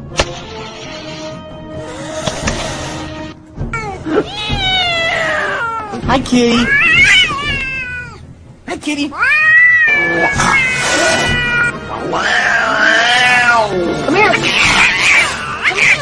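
A domestic cat yowling: a series of long, drawn-out calls that rise and fall in pitch, one after another, starting a few seconds in.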